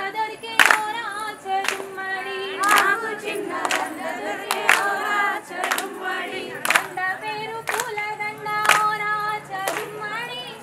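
Group of women singing a Bathukamma folk song in chorus, with rhythmic hand claps about once a second.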